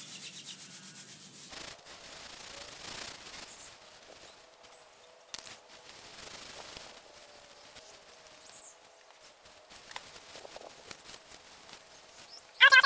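Dry weed and grass stems being rubbed and crushed between the hands into tinder. A fast dry crackle comes first, then softer rustling with scattered crackles and one sharper snap about five seconds in.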